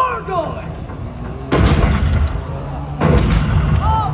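Two loud pyrotechnic bangs from a stunt show, about a second and a half apart, each ringing out for about a second over a steady low hum.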